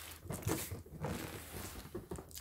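Large cardboard toy box being shifted and turned by hand, its sides scraping and rubbing with a few soft knocks.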